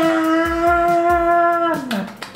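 A man's voice holding one long, steady "aah" that drops off and ends near the end, with background music underneath.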